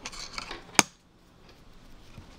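Metal knitting needles being handled: a short rustle of yarn and fabric, then one sharp click of the needles a little before one second in, followed by faint handling.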